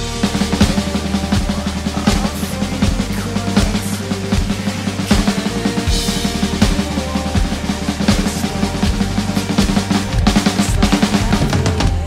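Pearl Masters Maple Reserve drum kit with Sabian cymbals played hard and fast, with rapid snare and bass drum hits, over a recorded rock backing track.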